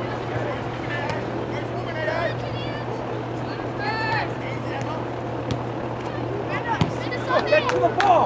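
A few scattered, distant shouts from soccer players and sideline spectators, the loudest near the end, over a steady low hum and outdoor background noise.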